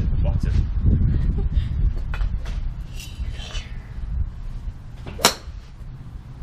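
Golf driver striking a teed golf ball once: a single sharp crack about five seconds in, over a steady low rumble.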